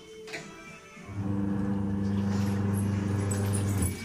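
Samsung twin-tub washing machine's wash motor humming steadily. It starts about a second in and cuts off just before the end, the on-and-off run of the agitator cycle.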